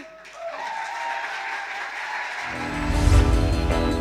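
Audience applauding, joined a little past halfway by music with a heavy bass that grows louder and takes over.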